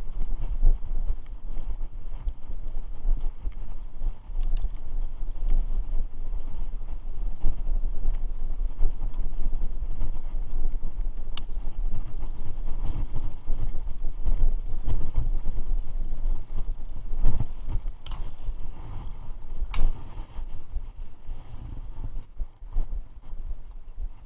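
Wind buffeting the camera microphone together with the rumble and rattle of a mountain bike riding over a bumpy dirt and grass trail, with a few sharp knocks from the bike over bumps.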